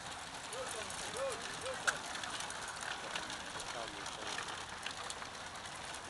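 Racing bicycles of a peloton rattling and clicking over cobblestones as they ride past, with tyre noise on the stones. A few short, faint shouts from spectators in the first two seconds.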